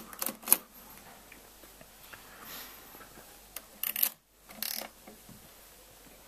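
A Felt & Tarrant Comptometer's keys and mechanism clicking twice at the start. After a quiet stretch with a soft rub, a short cluster of clicks comes about four seconds in.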